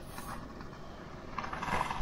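Strong wind buffeting a narrowboat, heard from inside the cabin as a steady rumbling noise that swells near the end.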